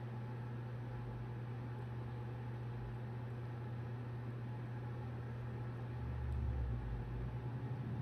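A steady low hum, and from about six seconds in a soft low rumbling: a cockatoo's belly gurgling while it eats banana.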